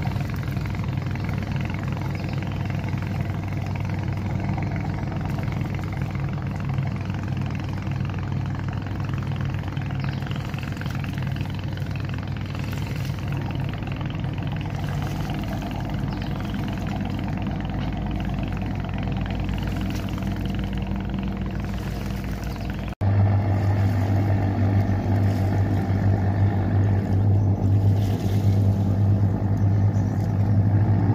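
Engine of an express passenger boat running steadily at speed as it passes, a continuous low hum. About 23 s in an edit cuts to a closer boat whose engine hum is louder and deeper.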